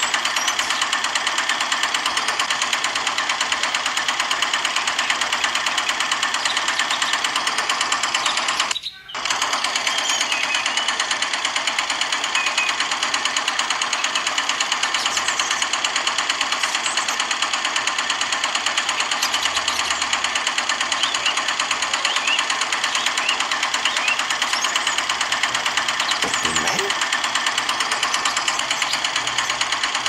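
Small motor of a miniature model engine running steadily with a fast, even buzz, driving a miniature water pump through a rubber-band belt. The buzz breaks off briefly about nine seconds in.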